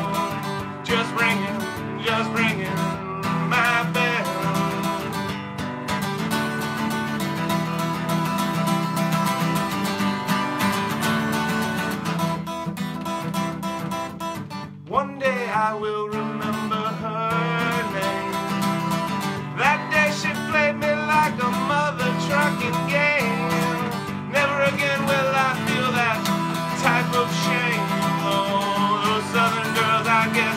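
Acoustic guitar strummed steadily in a country style, with a male singing voice coming in over it for much of the time. The strumming drops off briefly about halfway, then picks up again.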